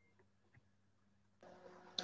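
Near silence, with faint room tone and a low hum coming in near the end.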